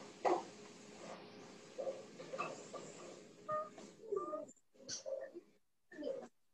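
Faint, scattered short vocal sounds and small noises, a few brief pitched calls among them, coming through a video call, with moments of dead silence near the end.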